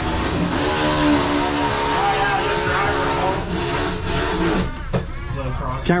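Snowmobile engine revving, its pitch rising and falling, then dying away about five seconds in.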